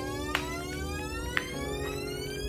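Electronic rising sweep: several tones climb together steadily over a held low note, like a riser in the background music, with two short clicks along the way.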